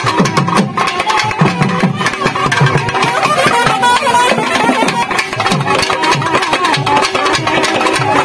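Naiyandi melam folk band playing a fast dance tune: thavil drums beating dense, rapid strokes under a wavering nadaswaram melody.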